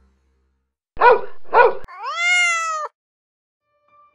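A domestic cat: two short sharp calls about a second in, then one long meow that rises and falls slightly in pitch.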